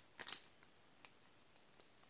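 Clear plastic bag around an enamel pin on its card backing crinkling briefly as it is handled and turned over, followed by a couple of faint clicks.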